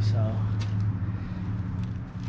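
Steady low hum of a running motor, holding one pitch, slightly weaker in the second half.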